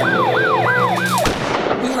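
Siren-like wail sweeping up and down about three times a second over backing music, cut off about a second in by a sudden burst of noise that dies away.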